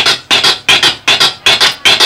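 Vinyl record being scratched on a turntable: quick, rhythmic back-and-forth strokes, about four or five a second, cut into music.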